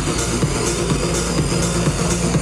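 Electronic dance music from a live DJ set playing loud over a club sound system, with a steady beat.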